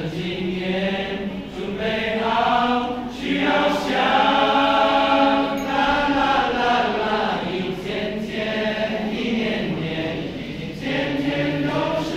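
A teenage boys' choir singing a Chinese New Year song in Chinese, the voices holding long sustained notes that swell to their loudest around the middle.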